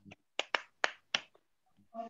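A few quick, sharp hand claps heard through a video call's audio, four strokes in just under a second, unevenly spaced.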